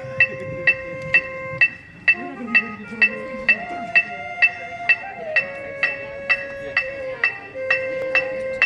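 Electronic metronome clicking steadily about twice a second, the loudest sound. Under it, a marching band's brass holds long notes that step to a new pitch every second or two.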